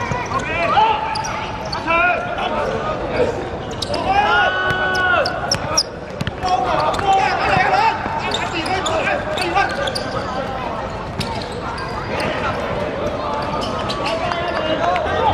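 Shouted calls from players and spectators at a seven-a-side football game on a hard court, with one long held call about four seconds in. Sharp knocks of the ball being kicked come through among the voices.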